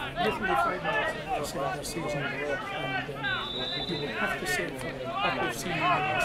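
Several voices talking at once in a steady murmur of overlapping conversation, with no single clear speaker. A short steady high tone sounds about halfway through.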